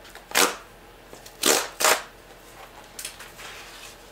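A cardboard presentation box being handled and opened: three short rustling scrapes, one about half a second in and two in quick succession around a second and a half, then fainter rustling near the end.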